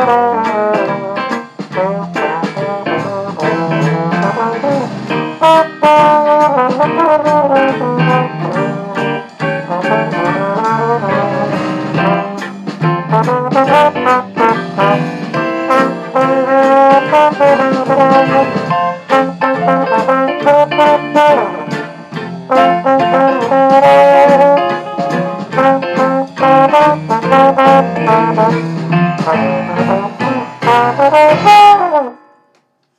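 Valve trombone playing a Dixieland jazz tune in a continuous line of notes.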